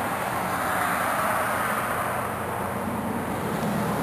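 Steady outdoor background noise: an even rush with a faint low hum underneath, with no distinct events.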